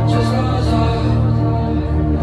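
Live band music at a concert: a held, sustained chord over a steady deep bass, with no drum hits.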